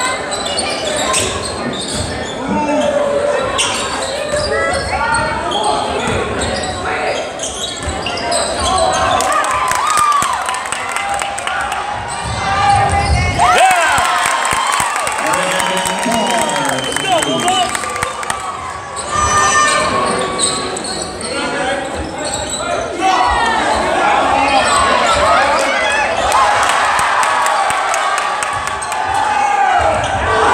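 Basketball dribbled and bounced on a hardwood gym floor during play, over steady crowd chatter and shouts echoing in a large gym.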